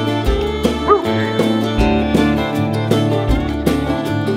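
Country-rock instrumental passage between sung lines: fiddle and guitar over bass and a steady drum beat. A short yelp-like cry cuts through about a second in.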